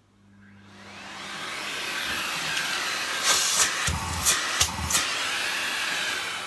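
Miele C3 Complete canister vacuum cleaner switching on with its soft-start motor, the suction rush swelling gradually over about two seconds and then running steadily. A few knocks and low thumps come about halfway through, and it is called really powerful.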